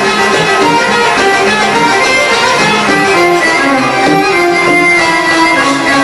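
Live Arabic music ensemble playing an instrumental passage, with plucked strings and bowed strings carrying the melody at a steady, full level.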